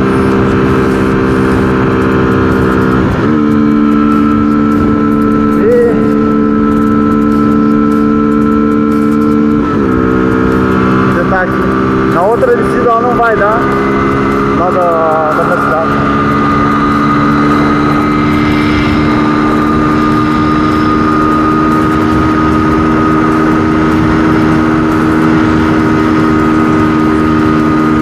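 Honda CG 125 Fan's single-cylinder four-stroke engine held at high revs at full throttle near its top speed, with wind on the microphone. The engine note steps to a new pitch a few seconds in and again about ten seconds in, then holds steady and creeps slowly upward as the bike gathers speed.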